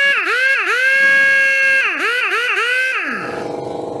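Blue-Point AT5500C 1/2-inch twin-hammer air impact wrench free-running with no load: a high, steady whine whose pitch dips and climbs back several times as the trigger is eased and squeezed, then winds down about three seconds in.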